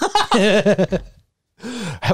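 A man laughing: about a second of pulsing laughter, then after a short pause a breathy, gasping start to another laugh near the end.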